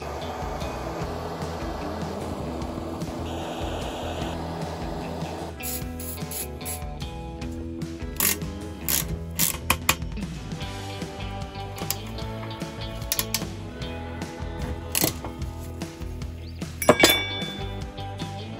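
Handheld gas blowtorch running steadily for about the first five seconds, heating the EXUP exhaust valve housing on motorcycle header pipes. Then come a run of sharp metal knocks and clinks as the housing is worked with a hammer and tools, with one loud, ringing metallic strike near the end. Background music plays throughout.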